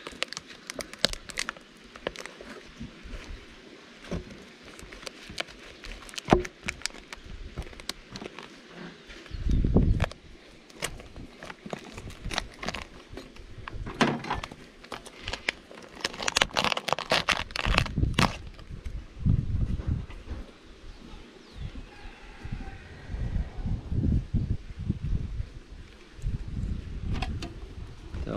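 A knife and hands working on a wooden stingless-bee hive: many clicks and crackles as the sticky propolis seal between the honey super and the box below is cut and pried apart, with duller wooden knocks and handling thumps as the box is worked loose and lifted off.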